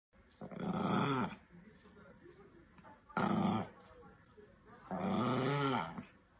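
Pomeranian growling in three bouts, the middle one shorter, each with a pitch that rises and falls. It is guarding a cucumber.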